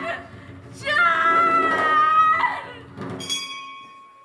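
A woman wailing in grief: a long, high, drawn-out cry that sinks slightly in pitch and fades, following an earlier cry just before. Near the end a single high ringing note sounds and hangs on.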